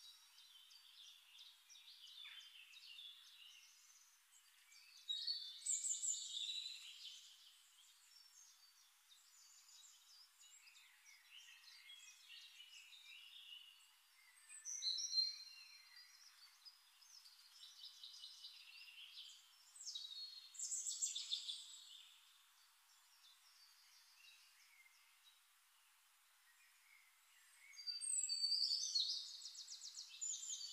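Birds chirping and trilling faintly in several short bursts, with quieter stretches between; the loudest burst comes near the end.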